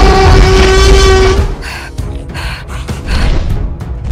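Tyrannosaurus rex roar sound effect: one long, loud roar held at a steady pitch over a deep rumble, cutting off about a second and a half in, followed by quieter, uneven growling rumbles.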